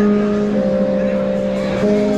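Live funk/R&B band playing, with drums under a sustained chord of steady held notes that changes to a new chord near the end.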